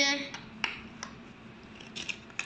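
A few light, separate clicks of small plastic LEGO minifigures being handled and set down on a floor.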